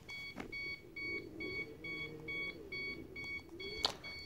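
A hoverboard beeping: short high beeps repeating evenly, about two to three a second, with a faint wavering hum underneath.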